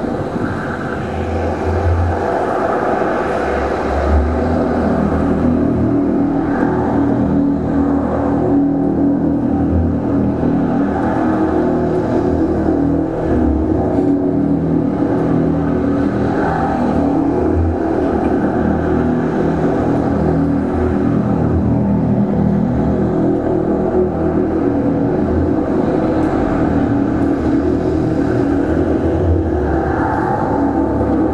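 Live experimental electroacoustic noise music: a dense, steady drone of sustained layered tones over a low rumble, loud and unbroken.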